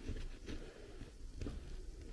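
Faint light ticks and scrapes from a small precision screwdriver driving a tiny screw into a metal M.2 SSD enclosure, over a low room hum.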